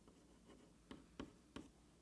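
Faint chalk writing on a chalkboard, with three short taps and strokes of the chalk about a second in.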